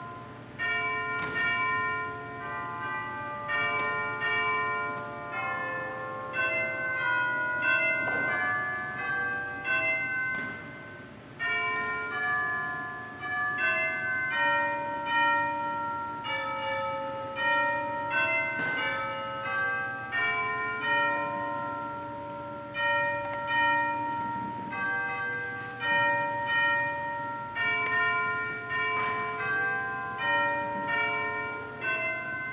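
Church bells ringing a continuous run of struck notes at many different pitches, each note ringing on and overlapping the next.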